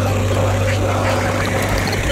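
Abstract electronic music: a dense, grainy noise texture over a steady low bass drone.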